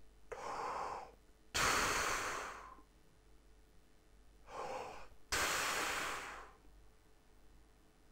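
A man taking two deep breaths through a brass player's embouchure visualizer ring held at his lips: each a short, softer rush of air followed by a louder, longer one that starts suddenly and fades away.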